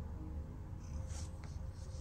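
Domestic cat purring, a steady low pulsing rumble, with faint scratchy rustles about a second in.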